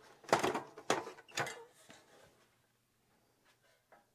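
Metal top cover of a Zenith VCR being slid and lifted off the chassis: three short clattering knocks within the first second and a half, then quiet.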